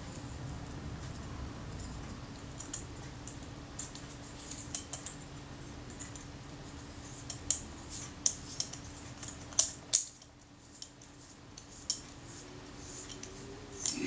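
Schneider Xenon lens being turned onto the thread of a Kodak Retina Reflex IV camera body: scattered small metallic clicks and light scraping, more frequent in the second half, over a faint steady hum. The lens threads in smoothly.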